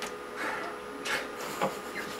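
Stifled, breathy laughter: a few short puffs of breath through a covered mouth, over a faint steady electrical hum.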